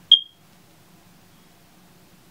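A single short, high-pitched beep about a tenth of a second in, fading out within a quarter of a second.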